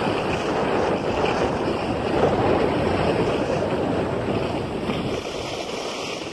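Skis sliding and scraping over packed snow, with wind rushing over the phone's microphone; the rush swells in the middle and eases near the end.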